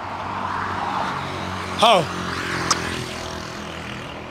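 A car driving past on the road: tyre and engine noise swells over the first second or so, then slowly fades, leaving a low engine hum. A short shout cuts in about two seconds in, and there is a single sharp click soon after.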